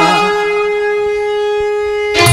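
A single long note held at a perfectly steady pitch on an electronic keyboard, ringing out after the sung line ends.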